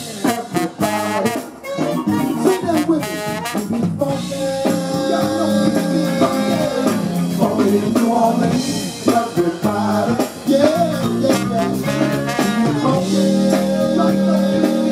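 Live funk band playing loudly, with a singer's voice over the band through a microphone.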